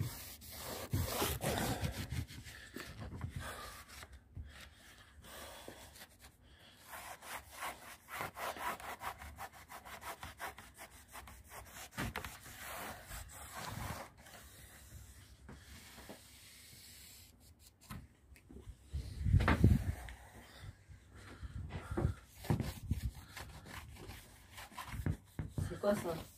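Cloth rubbed back and forth in short, repeated strokes along the edge of a motorhome's acrylic double-glazed window pane, degreasing it with acetone before regluing. A louder bump of handling noise comes about twenty seconds in.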